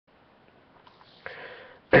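A person sniffs about a second in, then starts to clear their throat, loud and rough, right at the end.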